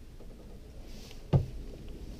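A low steady rumble with a single sharp knock about one and a half seconds in.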